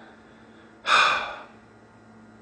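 A single loud breath from a man, lasting about half a second, about a second in. A faint steady hum runs underneath.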